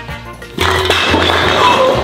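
A loud, long comic fart sound effect about half a second in, lasting a second and a half, over background music.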